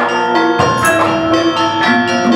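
Gamelan ensemble playing: struck bronze metallophones and kettle gongs ringing in a steady stream of notes, with a deeper stroke about half a second in.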